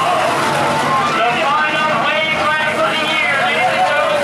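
Several race cars' engines running and revving, overlapping one another, mixed with the voices of spectators close by. The sound is steady, with no single crash standing out.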